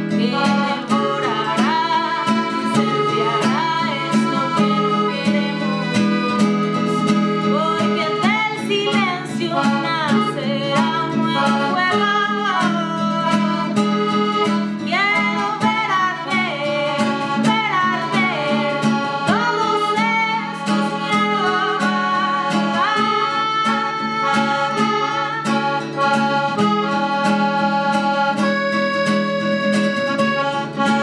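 A piano accordion and an acoustic guitar play a slow song while a woman sings in Spanish over them. Her singing drops out after about twenty seconds, leaving the accordion's held chords and the strummed guitar.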